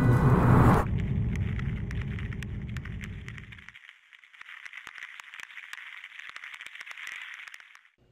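Sound effects under an animated title sequence: a loud hit in the first second fades into a low rumble that cuts off about four seconds in, over a thin crackling hiss with scattered clicks that stops just before the end.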